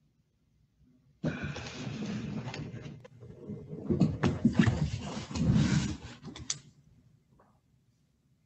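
Papers rustling and being handled close to a microphone, heard over a video call. It starts about a second in, with a quick run of knocks and clicks in the second half, then stops.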